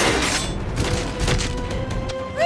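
Action-scene music from an animated series' soundtrack, with several sudden impact sound effects over it.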